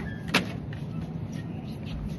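A single sharp knock on a metal wire shopping trolley about a third of a second in, over a steady low hum.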